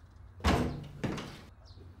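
Two sudden hits about half a second apart, each dying away over a few tenths of a second.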